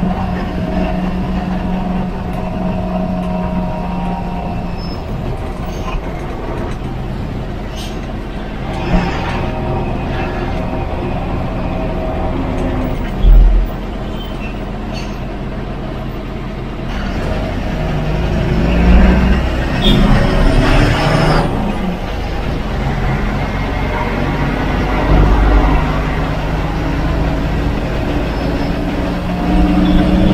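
Ashok Leyland tourist bus's diesel engine running under way, heard from the driver's cab with road noise. There is a loud thump about thirteen seconds in, and the engine gets louder for a few seconds past the middle.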